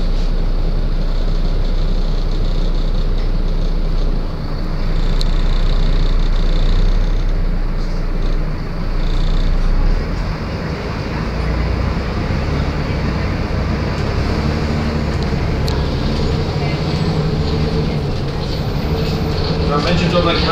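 Inside the upper deck of a moving Volvo ALX400 double-decker bus: a steady diesel engine drone and road noise. The engine note shifts about four seconds in and again about ten seconds in, as the bus changes speed.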